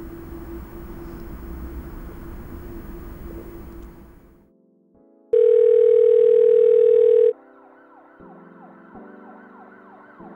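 A steady hum fades out about four seconds in. A loud steady electronic tone follows for about two seconds, then sirens wail over low sustained tones.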